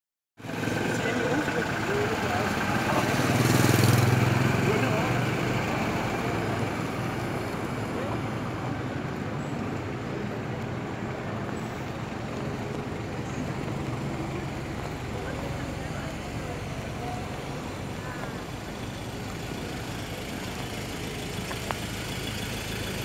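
Cars and pickups driving past on a street: engine rumble and tyre noise that swells about four seconds in as one passes close, then settles to a steadier traffic sound.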